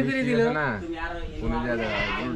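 Men's voices: a long-held, low-pitched vocal sound that falls away under a second in, then more talking about a second and a half in.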